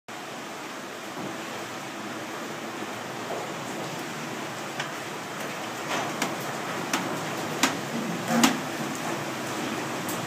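Water rushing steadily through a watermill as the wheel and its wooden shaft make their first slow turns on a newly fitted gudgeon. From about five seconds in come sharp knocks from the turning mill gear, the loudest a heavier thump near the end.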